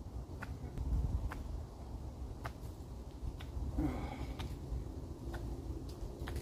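A small neck knife whittling a wooden tent peg: a string of short, sharp cuts at uneven intervals, about one to two a second, over a low rumble.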